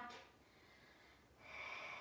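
A person's short audible breath about a second and a half in, after near silence.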